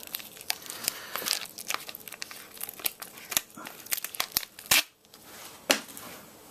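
Clear plastic packaging crinkling and crackling as an iPod nano is worked free of its holder, in irregular crackles and clicks with a couple of sharper snaps near the end.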